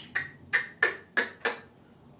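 Makeup brushes clicking against one another as they are picked through: about six quick, sharp clicks, roughly three a second, stopping before the end.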